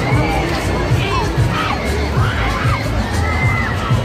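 Riders on a swinging, spinning pendulum thrill ride screaming and shrieking, many overlapping high cries rising and falling, over fairground music with a steady bass beat.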